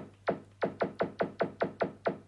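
Electronic laser-zap sound effect from a Blu-ray disc menu, a short 'pew' that falls sharply in pitch, repeated about nine times in quick succession and speeding up after the first two. Each zap plays as the menu selection is stepped through the language list.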